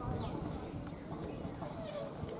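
Distant, indistinct voices of cricket fielders calling to one another over a fluttering wind rumble on the microphone.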